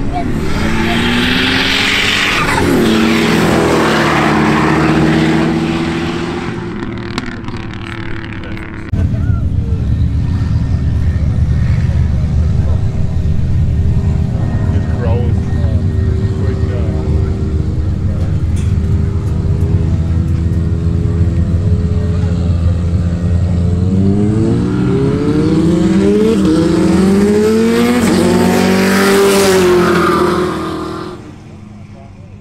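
Cars in a roll race at full throttle, engines revving hard as they pass. Through the middle there is a steady, more distant engine rumble; near the end two cars come by again, their engine notes rising and then falling as they pass.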